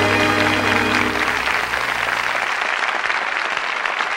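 Audience applauding at the end of a trot song, while the accompaniment's final held chord rings out and fades about a second in.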